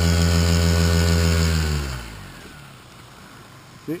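Paramotor engine idling steadily, then cut off about two seconds in, its note sinking as it spins down to a stop.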